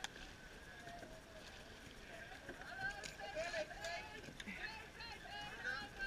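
Faint, indistinct voices of rowers in nearby boats talking, over a steady low hiss.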